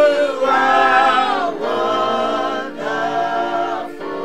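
A small vocal group singing a worship song unaccompanied, in harmony, in held phrases of a second or two with short breaths between them.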